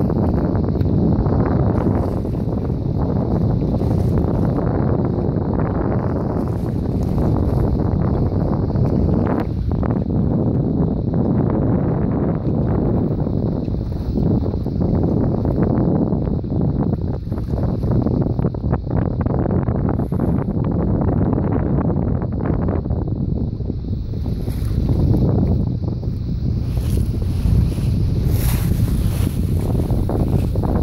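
Wind buffeting the microphone aboard a boat at sea, a steady low rumble mixed with the wash of the sea, with a little more hiss in the last few seconds.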